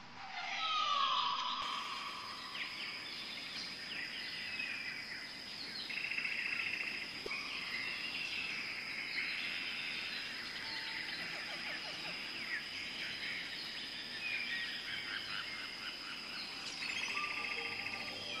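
A mixed chorus of wild birds calling and singing at once: chirps, rapid trills and whistled glides, the loudest a falling whistle about a second in. Under it runs a steady high-pitched whine.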